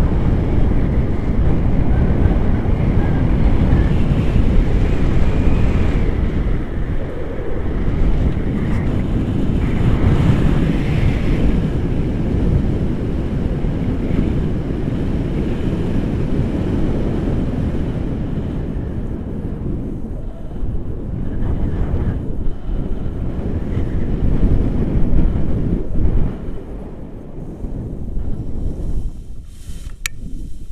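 Wind buffeting the microphone of a camera carried on a paraglider in flight: a heavy, fluctuating low rumble that eases off near the end.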